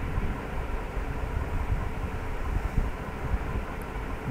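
Steady low rumble and hiss of background noise with no distinct events, like a fan or air conditioner picked up by the microphone.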